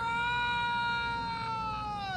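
A loud drawn-out shouted drill word of command, held on one high pitch for about two seconds and falling away at the end: the long cautionary part of a parade command to the troops.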